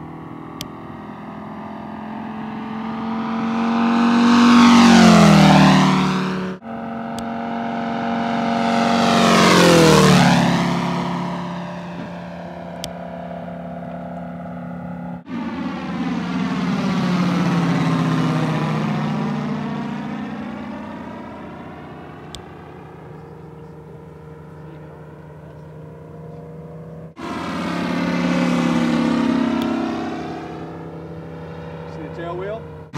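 Giant-scale RC Hawker Tempest's Moki 250 cc radial engine in flight, making four fly-by passes. On each pass the engine note swells and drops in pitch as the plane goes by, loudest about 5 and 10 seconds in, and the sound breaks off suddenly between passes.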